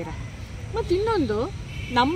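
A woman speaking in Kannada: one short phrase about a second in, with a brief pause before it.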